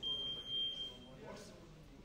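A single long, high electronic beep, steady in pitch and lasting about a second, starting abruptly.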